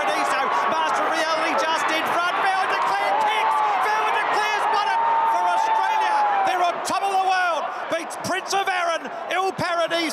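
A horse-race caller's excited call of a close finish, mostly unintelligible, with one long drawn-out shout from about three seconds in to nearly seven, then quick broken calling, over the noise of a crowd.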